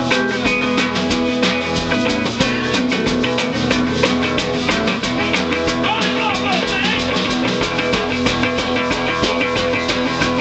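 Live rock'n'roll band music: an archtop electric guitar played over a drum kit keeping a steady, driving beat.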